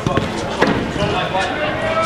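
A football being kicked, with a few sharp thuds in the first second, and players shouting.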